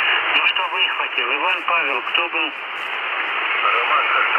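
A radio amateur's voice received in lower sideband on the 40 m band, played through the speaker of a Radtel RT-950 Pro handheld. The voice is thin and band-limited over steady static hiss. With the BFO trimmed, the voice is clearly readable rather than the 'Mickey Mouse' sound of a mistuned sideband signal.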